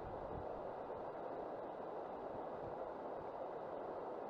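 Steady rushing of a fast-flowing river over stones, mixed with wind.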